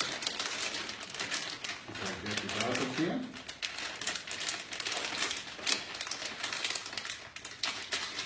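Rapid, irregular clicking and crinkling of small plastic items being handled, like packaging being worked open.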